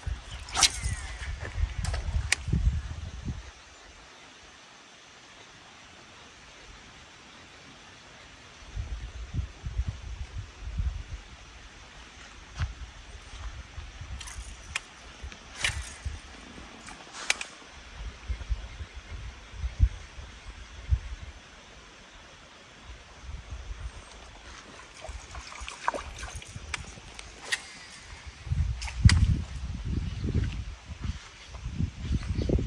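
A lure being cast and reeled in from a riverbank, with a few short sharp clicks and some water sloshing. Uneven low rumbling gusts and handling noise sit under it, with a quieter lull a few seconds in.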